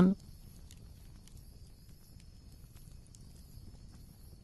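A voice finishes a phrase at the very start, then a faint background bed with a thin steady high tone and a few soft, scattered ticks.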